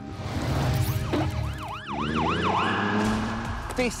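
Emergency-vehicle siren in a fast yelp, about four rising-and-falling whoops a second, ending on a short held tone that cuts off about three seconds in. A whoosh and a low rumble lead into it.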